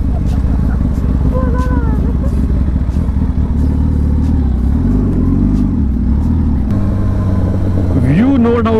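A Kawasaki sport motorcycle's engine running at road speed, heard from the rider's seat. The engine note dips and changes a little past the middle, then runs steadily again.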